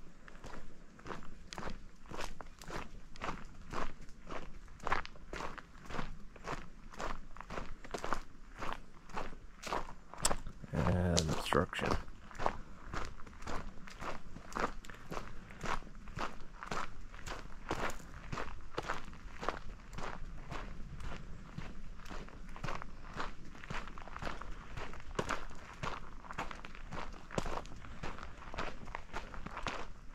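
Footsteps of a hiker walking steadily on a dirt forest trail, about two steps a second. A short voice sound breaks in about eleven seconds in.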